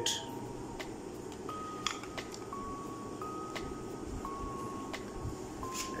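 Soft background music of slow, single held notes, with a few faint, sharp plastic clicks as the battery cover is fitted onto the handle of a battery-powered aquarium gravel cleaner.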